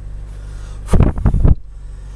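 Crackling, rustling bursts of a finger rubbing over the camera's microphone, about a second in and lasting about half a second, over a steady low rumble inside a car.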